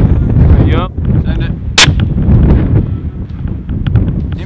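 A single suppressed long-range rifle shot about two seconds in, over steady low wind buffeting on the microphone.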